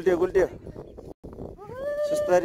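A person's voice yelling playfully while sliding down snow: a few quick shouts, then a long drawn-out rising cry held near the end.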